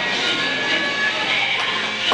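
Skateboard wheels rolling across a hard roller-rink floor, a steady noise, with rock music playing faintly underneath.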